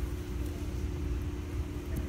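A steady low hum with a rumble beneath it, the room tone of a gym, with a couple of faint clicks.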